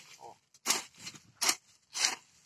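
Steel blade of a broad hand hoe (enxada) scraping and chopping through soil and weeds during weeding, two quick strokes less than a second apart.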